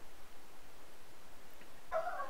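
Quiet, steady room tone with a faint even hiss and no distinct sound events.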